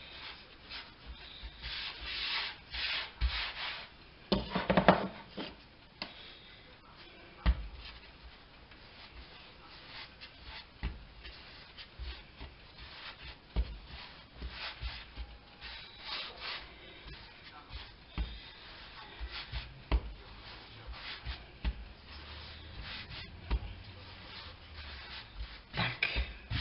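Hands kneading and rolling dough into a log on a floured laminate countertop: irregular rubbing strokes with a few sharp knocks, the loudest about five seconds in.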